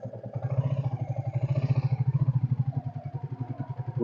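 Royal Enfield Bullet's single-cylinder four-stroke engine running at idle with an even, rapid beat.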